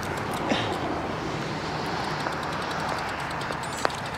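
Steady outdoor road noise, traffic and wind hiss, picked up by a GoPro microphone lying on the asphalt after a drop. There is a small knock about half a second in and a sharp click near the end.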